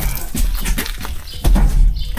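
A heavy, waterlogged car carpet being shoved across a van's sliding-door sill and load floor: scraping and dull knocks, with two heavier low thumps, the second and loudest near the end.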